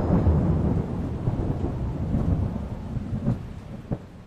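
Thunder sound effect: a deep rumble that dies away steadily, with two short cracks near the end.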